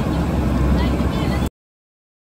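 Construction-site ambience: a steady low engine rumble with faint voices in the background. It cuts off suddenly about one and a half seconds in.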